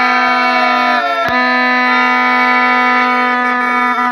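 Accordion playing loud held chords over a steady low note, the chord changing with a brief break about a second in.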